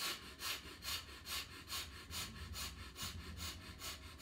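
A man's quick, forceful breaths out through one nostril while the other is held shut, about two a second with softer intakes between, in a yogic breathing exercise.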